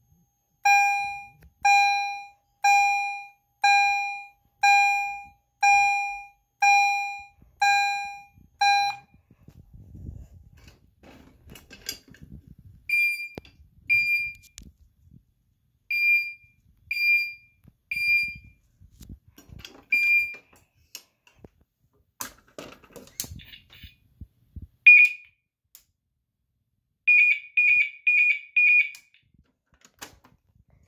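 Fire alarm chimes sounding. One chime strikes a single decaying tone about once a second, nine times. After a short pause a second, higher-pitched chime strikes more quietly and irregularly, ending in a quick run of four strikes.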